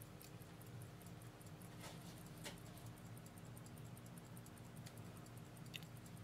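Faint ticking of a 1928 stem-set pocket watch with its back open, the balance beating steadily at about five ticks a second. A few small clicks of handling fall in with it.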